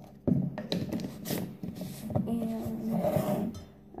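Knocks and clatter of items handled on a kitchen counter around a plastic cup, then a woman's voice for about a second without clear words.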